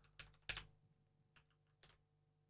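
Faint computer keyboard keystrokes: a handful of separate clicks, the loudest about half a second in.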